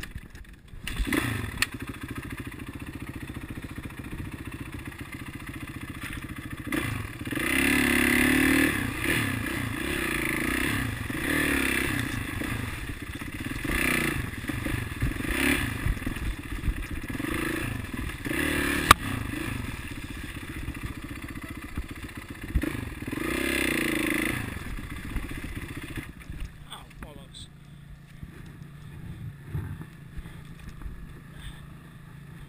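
Dirt bike engine heard from the handlebar, revved in repeated short bursts about every two seconds as it climbs a rough, rutted trail, then dropping back to a quieter, steadier run near the end.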